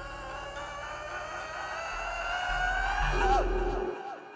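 A singer holds a long final note over a sustained band chord, the voice sliding down about three seconds in. The band's low bass note cuts off just before the end.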